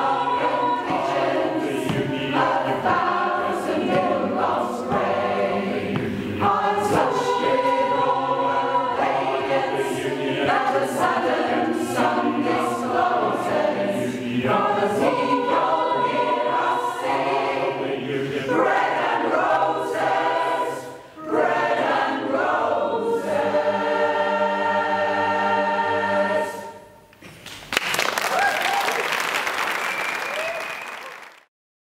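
Mixed-voice choir singing in harmony, ending the song on a long held final chord. Near the end the audience breaks into applause.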